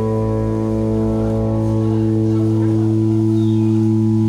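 Live rock band holding one sustained chord on electric guitars and keyboard, ringing steadily without a break.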